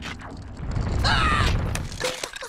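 Film sound effect of ice starting to crack: a low rumble that swells in the middle, with a high creaking squeal about a second in.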